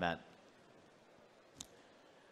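One short, sharp click about one and a half seconds in, over faint room tone.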